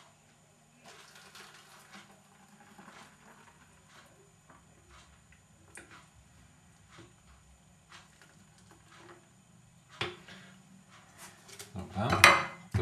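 Faint kitchen handling sounds while a fruit smoothie is poured from a blender jug into a wide-necked plastic bottle: scattered soft clicks and knocks, a sharper knock about ten seconds in, and a little clatter near the end.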